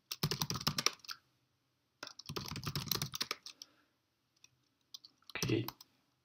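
Computer keyboard typing: two quick runs of keystrokes, then a few single key taps near the end.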